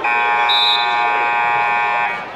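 Scoreboard buzzer sounding one loud, steady tone for about two seconds, starting and cutting off sharply: the horn that ends a wrestling period.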